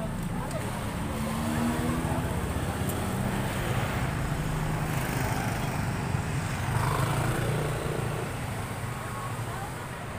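Road traffic passing close by: motor scooters and cars going past one after another, with a steady engine hum and tyre noise.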